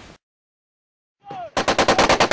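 Machine gun firing a rapid burst of evenly spaced shots, about ten a second, starting about one and a half seconds in.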